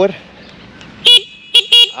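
Dokma Ninja electric scooter's horn sounding three very loud short beeps about a second in, the middle one the shortest and the last two in quick succession.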